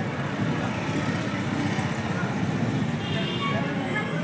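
Busy street ambience: a steady low rumble, like traffic, under background voices.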